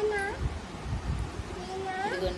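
A toddler's high-pitched voice: a short call right at the start and another near the end that rises in pitch.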